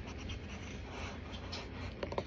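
A plastic spoon scraping and scooping through powdered cornstarch in a can, in a series of soft scratchy strokes.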